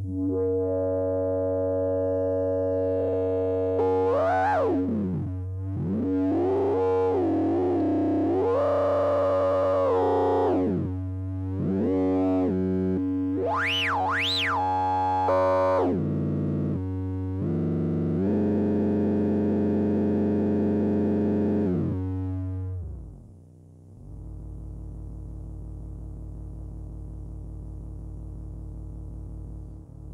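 A low synthesizer tone runs through a Tenderfoot SVF-1 state-variable filter with the resonance turned up. The resonant peak sweeps up and down over it several times, showing the less polite resonance mode, which drives the resonance further until it clips. About two-thirds of the way through, the sound drops to a quieter, lower steady buzz.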